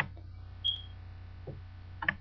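Computer mouse clicks: one sharp click at the start and a fainter one about a second and a half in, over a steady low electrical hum. A brief high tone sounds about two-thirds of a second in.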